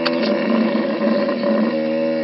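Sound effect of a long animal bellow, meant as a hippo, held on one steady pitch.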